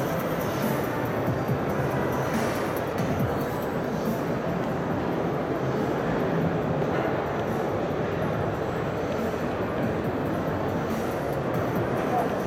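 Steady din of a busy exhibition hall, with music playing in the background.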